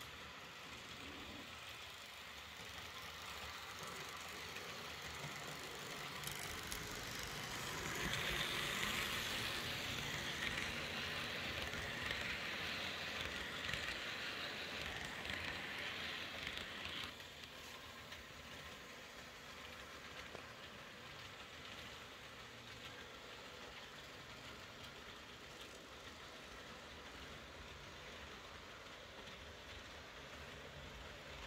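Model train running on the layout's track, with no sound module, so only its motor and wheels are heard. The noise grows louder as the train comes close, is loudest for about nine seconds, then drops suddenly and runs on more faintly.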